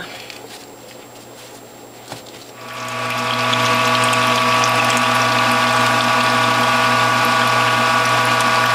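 Norwalk juicer's electric hydraulic press starting up a little under three seconds in and then running with a steady, even hum while it presses the juice out of the cloth-wrapped pulp.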